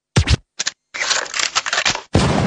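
A break in a dance-routine music mix: two or three sharp hits separated by silences, then about a second of scratchy, record-scratch-like noise.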